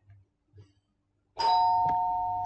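A two-note chime sounding suddenly about one and a half seconds in, its two pitches held together and slowly fading.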